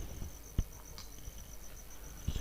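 A cricket chirping in an even, high-pitched pulse, about five pulses a second, with a soft low thump about half a second in.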